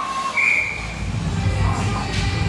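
Referee's whistle blown once, a short, bright blast about half a second in, stopping play. A low beat of arena music starts up right after it.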